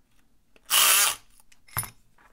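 Wendt electric lock pick gun running in one short burst of about half a second, its needle vibrating against the pins inside a padlock's keyway. A single short click follows near the end.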